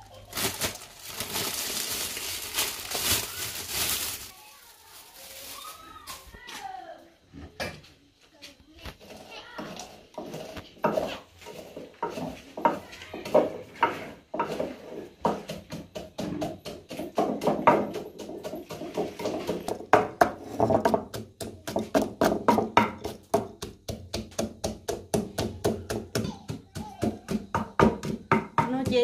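Roasted peanuts rattling into a clay mortar for the first few seconds, then a wooden pestle pounding them in the mortar with repeated strokes that quicken to about three a second in the second half.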